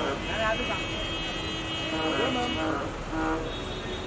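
A vehicle horn held for about two and a half seconds, then a short second blast, over steady street traffic noise.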